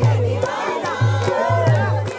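A Paddari folk dance song with a deep, repeating drum beat, and a crowd of many voices singing and shouting along over it.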